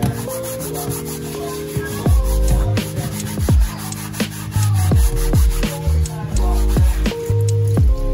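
A dish sponge scrubbing a plastic cutting board in quick rubbing strokes, under background music whose deep bass beat comes in about two seconds in and is the loudest sound.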